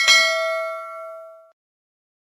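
A single bell-like ding sound effect for the notification-bell click, struck once and ringing out, fading away over about a second and a half.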